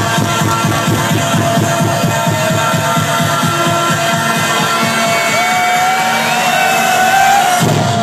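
Electronic dance music from a DJ set, played loud through a nightclub sound system, with a steady kick-drum beat. The bass drops out shortly before the end.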